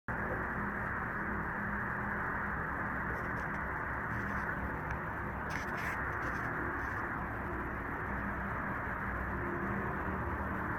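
Steady outdoor background noise: a low hum under an even hiss, with a few faint high chirps about five and a half seconds in.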